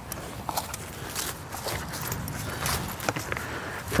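Footsteps and rustling on grass, with scattered small, irregular knocks and no steady tone.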